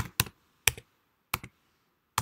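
Keyboard keys being typed: about five separate, unevenly spaced keystrokes, entering a search for a program.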